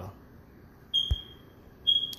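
Two high, clear electronic beep tones about a second apart, each fading out, with a short low thump just after the first.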